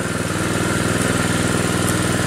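A small engine running steadily at an even speed, close by.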